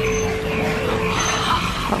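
Steady background ambience of a themed indoor ride queue: an even hiss with a held tone that stops a little over a second in.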